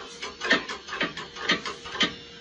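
Knocks repeating about twice a second over a faint steady hum.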